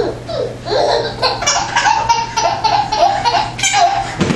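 Baby laughing in a quick run of short, even belly-laugh pulses, starting about a second in and stopping near the end.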